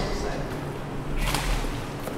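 Handling noise from a handheld camera being swung around: a low rumble with a brief swish about a second in.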